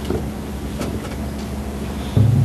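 Steady low electrical hum and hiss from a meeting-room microphone and sound system during a pause in speech, with a few faint clicks.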